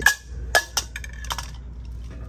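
A drinking cup dropped and clattering against the shelf: one loud knock at the start, then three lighter knocks over the next second and a half, with a brief ring on the first hits.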